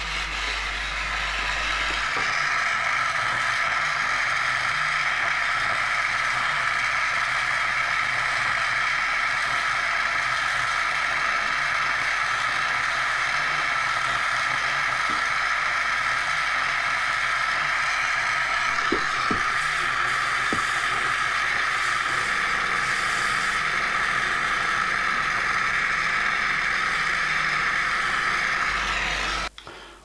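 Oxy-propane torch flame burning with a steady hiss while it heats a cracked speedometer gear for silver soldering. It cuts off suddenly near the end.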